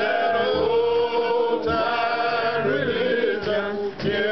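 A small group of men singing a gospel song together in harmony, holding long notes, with a brief break for breath just before the end.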